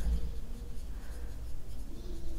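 Marker pen writing on a whiteboard: faint scratching strokes as letters are written.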